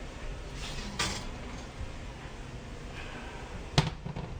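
A glass baking dish lifted from an oven rack with a soft clatter about a second in, then set down on a glass stovetop with one sharp clink near the end.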